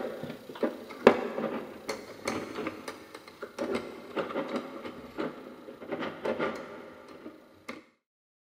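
Metal parts of a 1950s–60s mechanical one-arm bandit mechanism clicking and clinking irregularly as the brake arms are fitted onto its front, fading out near the end.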